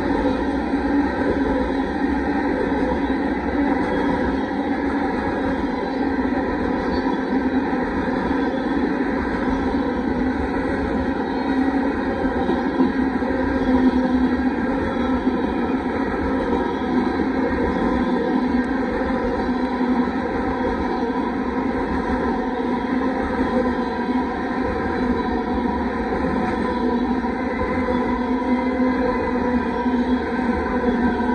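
Freight train tank cars rolling steadily past, a continuous noise of steel wheels running on the rails.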